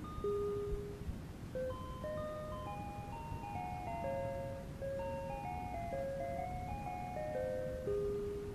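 Casio MT-100 home keyboard playing a simple melody one plain-toned note at a time, with a quicker run of short notes stepping up and down through the middle. A steady low tape noise sits underneath the notes, from an old cassette recording.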